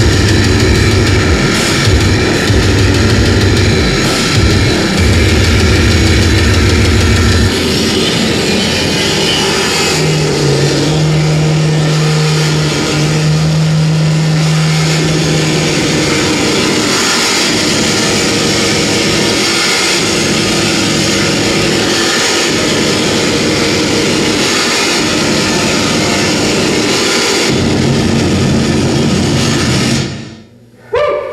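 Loud live electronic noise music from a sampler and amplified gear: a dense, distorted wall of noise. A low bass tone pulses on and off through the first seven seconds or so, and a steady low drone holds from about ten to sixteen seconds in.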